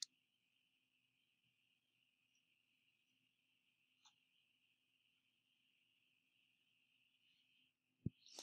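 Near silence: faint steady high-pitched room hiss, with a short click at the very start and a fainter click about four seconds in.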